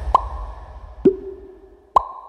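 Three cartoon-like "pop" sound effects in an electronic dance track's breakdown, about a second apart, each a sharp click with a short pitched blip, alternating high, low, high, over a fading low bass tail.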